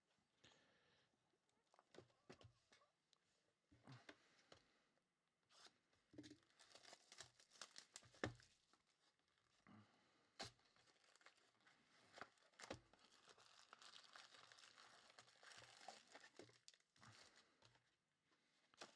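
Faint tearing and crinkling of plastic wrap and packaging as a sealed box of Panini Prizm basketball cards is opened and its foil packs are handled, with scattered small clicks and taps.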